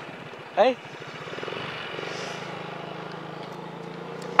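Motorcycle engine running steadily while riding, a low even hum that firms up a little after the first second or so. A short shouted call about half a second in.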